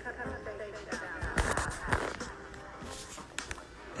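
An electronic beat played on a small tabletop sampler, with a cluster of sharp drum hits a little over a second in. Indistinct voices sit over the beat.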